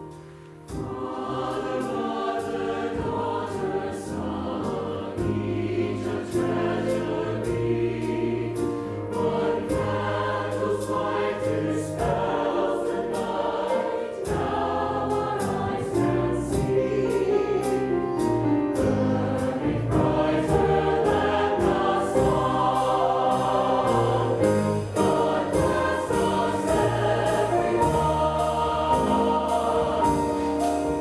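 Mixed choir singing with piano, bass guitar and drum accompaniment, over a steady beat of light high ticks. The music swells in about a second in.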